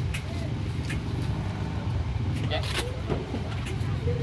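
Busy market ambience: a steady low rumble with faint voices in the background and a few brief clicks.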